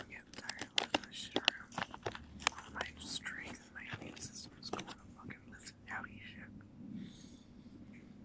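A man whispering close to the microphone, his speech breathy and broken by frequent sharp mouth clicks, trailing off near the end.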